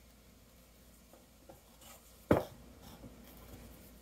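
Handling noise from a leather guitar strap being lifted and moved over an open guitar case: a few faint rubs and light ticks, and one short sharp knock a little past two seconds in.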